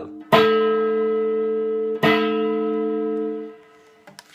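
Electric guitar through an amplifier, its D string pulled at the 5th fret and hooked across the G string, strummed twice about a second and a half apart. The two crossed strings ring together like a bell and die away near the end.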